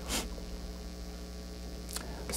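Steady electrical mains hum in the microphone and sound system during a pause in speech, with a short soft rush of noise just after the start.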